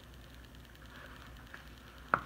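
Quiet room tone with faint soft scraping and squishing of a spoon spreading thick glue-and-paint mix into a Play-Doh mould.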